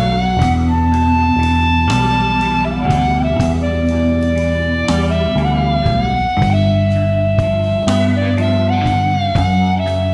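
Slow blues instrumental break: a lead electric guitar plays long held notes that slide from pitch to pitch, over bass and regular drum hits.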